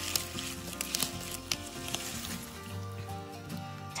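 Quiet background music with light crackling rustles of grass and leafy plants being handled, as a few short clicks mostly in the first half.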